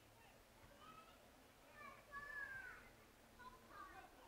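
Faint, distant shouts and calls of voices across a football ground, with the loudest call a little past halfway.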